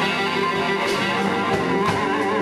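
Live blues band playing between sung lines: electric guitar over bass and drums, in an audience recording.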